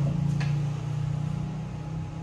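A steady low mechanical hum, with a light click about half a second in.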